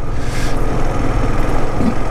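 Motorcycle riding on a gravel road at steady speed: the engine hums low under a constant rush of wind and tyre noise.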